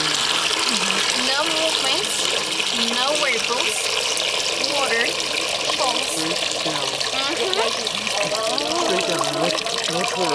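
Water draining out of a stainless-steel sink basin through its plug hole: a steady rush of running water.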